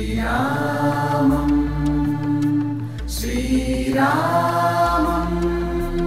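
Devotional chant music: a sung mantra in two long held phrases, the second beginning about three seconds in, each sliding up into its note over a steady low drone and bass.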